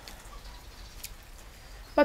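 Low background noise with a couple of faint, brief clicks, one at the start and one about a second in.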